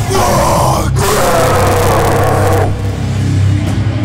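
Live hardcore band: two long, hoarse yelled vocal phrases over a steady low droning guitar and bass note. About two and a half seconds in the yelling stops and only the low note rings on.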